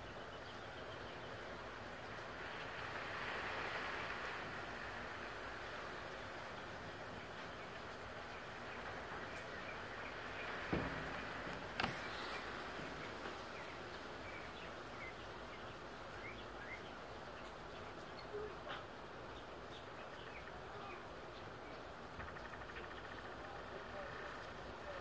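Scotsman ice machine with its control panel open, running with a faint steady noise. Two sharp clicks come about eleven and twelve seconds in, with a couple of small ticks later.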